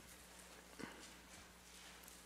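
Near silence: room tone with a low steady hum, and one brief soft tap a little under a second in.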